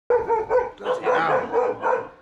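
A dog barking repeatedly in quick succession, an unfriendly warning bark.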